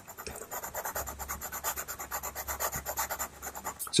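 Pastel pencil scratching on paper in quick, short, repeated shading strokes, several a second.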